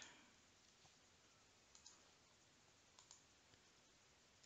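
Near silence with a few faint clicks from a computer mouse, in two close pairs about a second apart.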